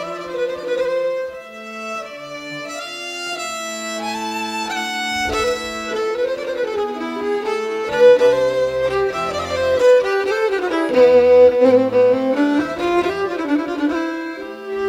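Folk instrumental music with a fiddle carrying a sustained, flowing melody over string accompaniment. The sound fills out with lower notes and grows louder about eight seconds in.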